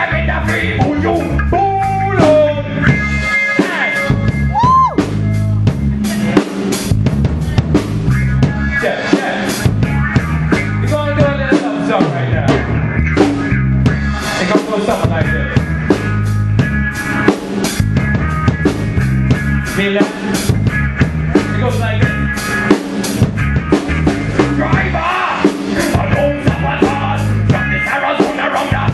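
Live rock band playing loud, with electric guitars over a drum kit keeping a steady beat.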